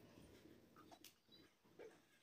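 Near silence: room tone with a few faint, brief small sounds.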